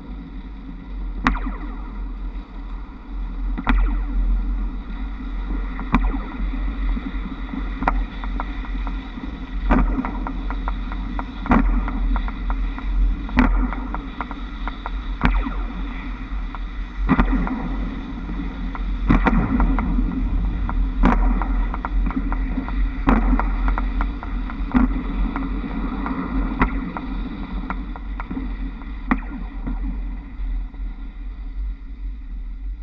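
Wind rumbling over a roof-mounted camera on a moving Škoda 21Tr trolleybus, with running noise underneath. Sharp clicks come about every two seconds as the trolley poles' current collectors run across the overhead wire fittings.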